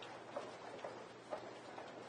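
A few faint, short ticks about half a second apart, over soft room hiss.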